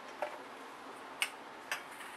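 A few faint, light clicks, about three, from a steel bowl of salt and its spoon being picked up and handled.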